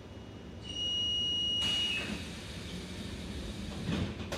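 Alstom metro car's door-closing warning: one long high beep of over a second. The sliding doors then run shut and close with a thud near the end.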